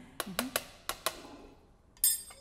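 A spoon clicking and scraping against a metal mesh strainer as soaked herbs are pressed to squeeze out the tincture, about five light clicks in the first second or so.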